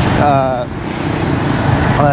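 A motorcycle running along a busy street, heard from its pillion seat as steady engine and road noise with passing traffic. A short voice sound from the passenger comes near the start.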